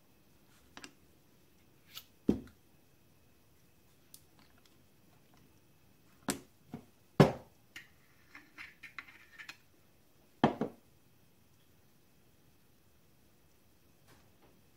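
Small machined aluminium and steel model-engine parts being handled and set down on a steel bench: scattered sharp clicks and knocks. The loudest is about seven seconds in, and a run of light ticking and scraping follows around nine seconds.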